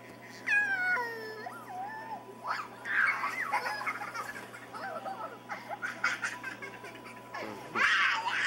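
Small children laughing and squealing while they play, with a high gliding squeal about half a second in and a burst of giggling around three seconds.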